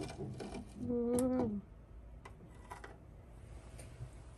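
Light clicks and knocks of a microwave door being opened and a ceramic bowl being handled. About a second in there is a short steady tone lasting about half a second that dips in pitch as it stops.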